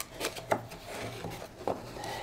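Cardboard box being forced open by hand: cardboard rubbing and scraping, with a few sharp clicks as the stiff tucked-in flap works free.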